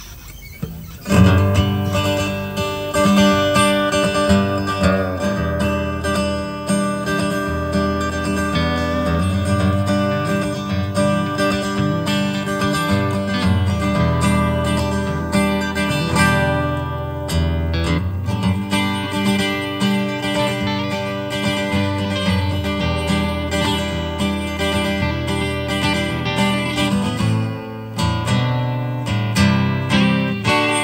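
Several acoustic guitars strumming together in a song's instrumental intro, with no singing yet; the playing starts abruptly about a second in.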